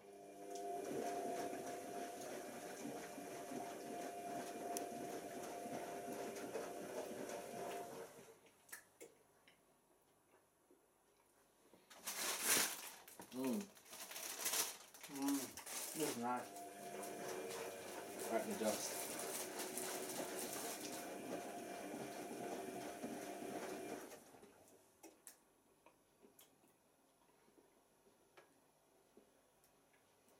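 Tricity Bendix AW1053 washing machine on its pre-wash: the drum motor turns the wet load with a steady hum and a swishing hiss for about eight seconds, stops, then runs again for about eight seconds before stopping.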